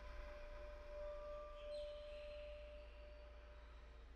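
A single faint note of a hang (steel handpan) ringing on and slowly fading, one steady pure tone, with a couple of fainter higher tones briefly sounding about a second in.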